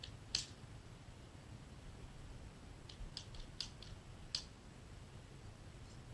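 .22 rimfire rifle shots heard from afar, sharp thin cracks: one shortly after the start, a quick run of several around the middle, and one more a moment later.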